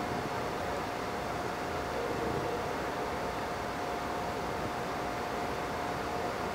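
Steady room noise: an even hiss with a faint, steady high hum running through it, and no speech.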